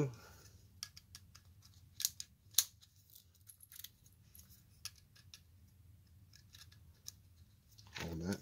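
Faint, scattered small metal clicks and light rattles of a lamp socket and its ball-bead pull chain being handled as the chain is fitted to a new pull-chain socket. The clicks come mostly in the first half, the sharpest about two and two and a half seconds in.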